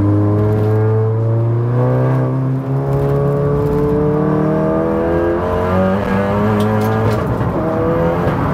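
A Volkswagen Golf R's turbocharged four-cylinder engine accelerating hard, heard from inside the cabin. Its pitch climbs steadily through each gear and drops back at two upshifts, one a couple of seconds in and one past halfway.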